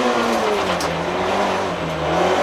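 Rally car engine heard from inside the cockpit, its revs dropping about half a second in and then holding at a lower steady note as the car slows through a tight right-hand bend.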